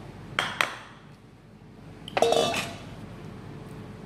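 Kitchenware being handled on a table: two light clinks, then about two seconds in a louder metallic clatter with a brief ring, as a stainless steel mixing bowl is moved and set down.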